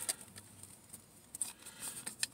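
A few faint, scattered clicks and rustles as a plastic toy chameleon with a paper tag is picked up and handled.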